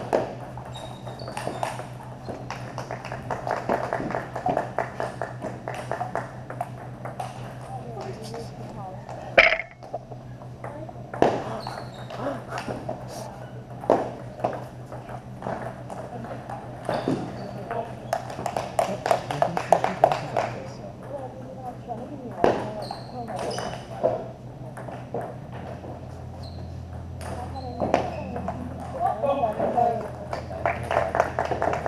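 Ping-pong ball clicking off paddles and the table in irregular rally strokes, with one louder crack about nine seconds in. Background chatter and a steady low hum in a large hall run underneath.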